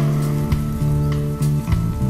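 Rock music: a low bass line stepping from note to note about twice a second, under drum hits and a steady noisy wash higher up.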